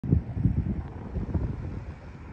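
Wind buffeting the microphone outdoors: an uneven low rumble that rises and falls in gusts.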